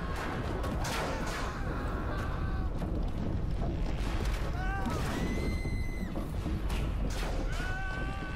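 A reenacted collapse of a tall stack of logs: a continuous deep rumble with sharp cracks and crashes of timber through it. Voices cry out about halfway through and again near the end, with music beneath.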